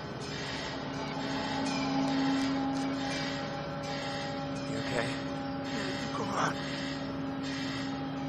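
A steady low hum of constant pitch over a faint noisy background, with a few short rising squeaks around the middle.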